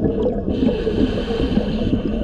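Scuba regulator heard underwater: a steady hiss of the diver breathing in starts about half a second in and lasts about two seconds, over a constant low rumble of water and bubbles around the camera.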